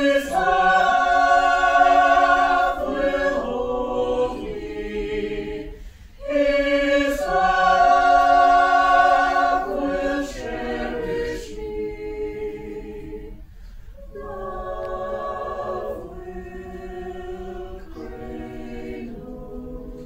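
Mixed-voice choir singing a cappella in held chords: two loud phrases, with a short break about six seconds in, then a softer passage from about ten seconds in.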